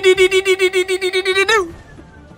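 One long, wavering voice-like cry held on a single pitch, pulsing about seven times a second, that breaks off about a second and a half in.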